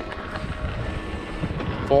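Wind rushing over a helmet camera's microphone, mixed with the rumble and small knocks of a mountain bike running down a dirt trail; a man's voice says one word near the end.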